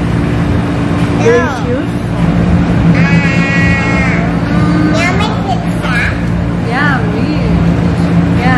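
Short high-pitched voice sounds, rising and falling, with one held high tone about three seconds in, over a steady low hum.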